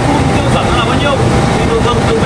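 A man talking over a loud, steady low rumble of machinery.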